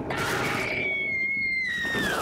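A high-pitched scream from the drama's soundtrack, held steady for about a second and a half and falling away near the end.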